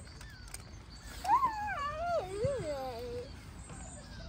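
Young child's whining, wail-like vocal sound that wavers up and down in pitch for about two seconds, starting a little over a second in.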